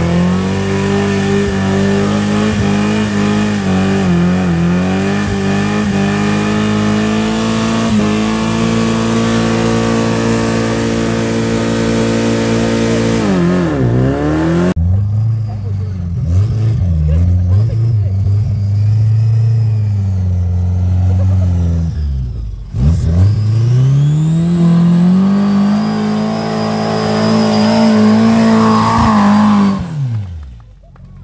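Engines of small open trials cars climbing a muddy hill at high revs. The first holds hard, high revs with some rise and fall, then dies away about 13 seconds in. After a break, another run's engine revs rise and hold high, loudest near the end as the car passes close by.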